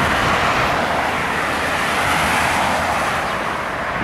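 A car driving past on the road: a steady rush of tyre and engine noise that eases slightly near the end.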